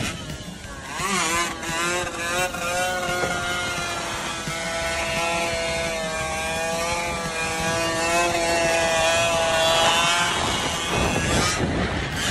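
Honda NSR two-stroke sport motorcycle engine revving up quickly about a second in, then held at high revs with a slightly wavering pitch. Near the end the engine note gives way to a rushing noise.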